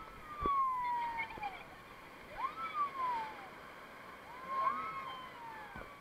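Rafters screaming as the raft drops through a whitewater rapid: three long screams, each rising then falling in pitch, over the steady rush of the rapid.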